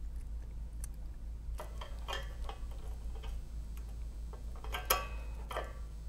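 Padlock being handled, with irregular small metallic clicks and rattles; the sharpest click comes about five seconds in.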